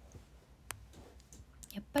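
A short pause in a woman's talk, with one sharp click about two-thirds of a second in and a few faint ticks, before her voice starts again near the end.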